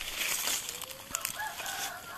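A rooster crowing once, faintly: one long call that begins about half a second in and rises, then holds. Underneath are light rustles and crackles of dry leaf litter.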